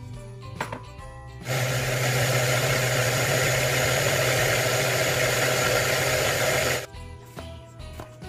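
Food processor motor running steadily as it purées fresh peas with salt and water, starting suddenly about one and a half seconds in and cutting off after about five seconds. Soft background music plays before and after it.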